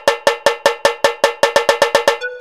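A cowbell-like percussion note struck over and over in a roll that speeds up, from about seven strikes a second to about twelve, as a break in electronic music.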